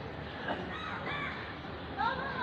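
A few faint crow-like caws about half a second to a second and a half in, over steady outdoor background noise.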